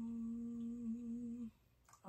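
A person humming one long, steady closed-mouth 'mmm', which stops abruptly about one and a half seconds in.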